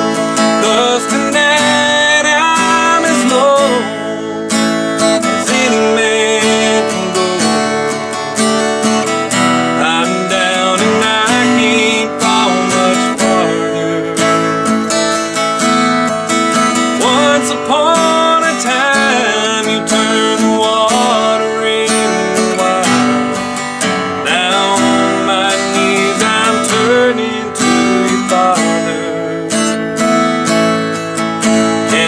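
Acoustic guitar played solo, a melody picked over strummed chords.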